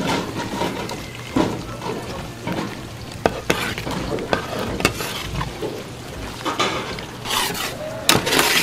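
A metal ladle and spatula stirring thick tteokbokki sauce in a large steel pan, with irregular sharp clinks and scrapes of metal against the pan.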